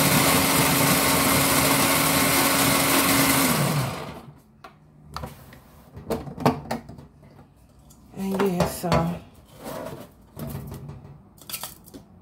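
Electric snow-cone machine shaving ice: a loud, steady motor hum with grinding that winds down and cuts off about four seconds in. Light clicks and knocks of handling follow.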